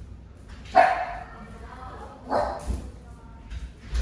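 Dog barking twice: a loud bark a little under a second in and a second one about a second and a half later.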